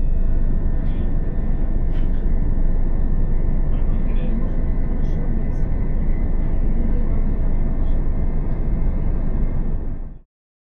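Steady rumble and rush of a Class 375 Electrostar electric multiple unit running on the rails, heard from inside the carriage. A few faint steady whining tones sit above it, and there are occasional faint clicks.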